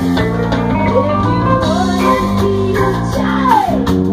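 Live reggae-punk band playing: electric guitar and bass guitar over a drum kit, loud and steady, with a pitch sliding down near the end.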